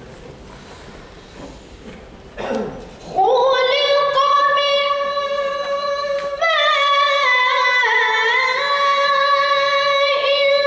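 A child's voice reciting the Quran in the melodic tilawat style through a microphone, coming in about three seconds in with long held, ornamented notes that step up and down in pitch. Before that, only low background noise.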